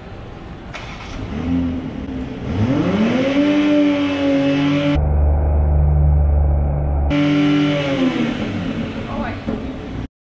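Toyota Supra's engine revving in a showroom: the pitch climbs and holds high, a deep rumble follows in the middle, then the revs fall back near the end.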